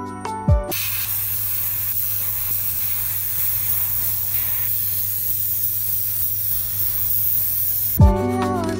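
Gravity-feed airbrush spraying primer: a steady, even hiss of air and paint that cuts in sharply under a second in and holds at a constant level.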